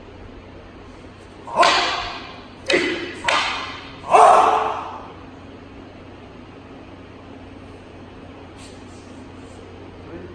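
Wooden jo staffs striking together four times in quick succession during paired staff practice. The sharp knocks echo briefly in the hall.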